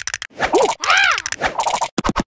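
Cartoon sound effects: a run of rapid clicking and scratching, then a character's wordless voice in two short calls that rise and fall in pitch, then more rapid clicking near the end.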